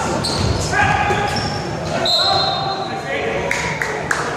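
Basketball shoes squeaking on a hardwood gym court during play: several short, high squeals, with a few thuds and voices in the background.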